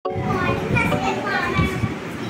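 Young children's voices chattering over one another.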